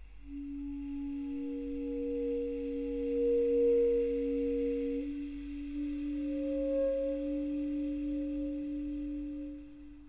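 Basset horn holding two long tones at once, a lower and an upper one. About halfway through, the upper tone steps up in pitch while the lower one holds, and both fade near the end.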